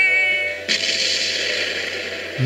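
Cartoon sound effects from an animated video's soundtrack: a whistling tone falling in pitch, then a sudden explosion blast about two-thirds of a second in that carries on as a steady rush of noise.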